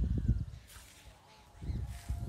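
Low, gusty rumble of wind on the microphone that drops away for about a second in the middle, with faint bird calls.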